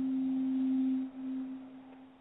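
A single steady low tone, the held last note of the sound bed under the show's recorded disclaimer, sustained for about a second, then dropping and fading away.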